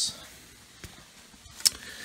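Quiet background hiss with a soft tick, then a sharp click near the end, as a hand moves in toward the mixer: handling noise.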